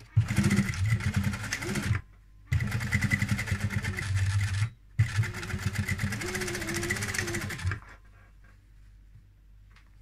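Sewing machine stitching through the folded pleats of a cotton face mask, run in three bursts of about two to three seconds with brief stops between, then stopping near the end.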